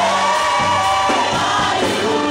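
Gospel choir singing a worship song through microphones over band accompaniment, holding long sung notes.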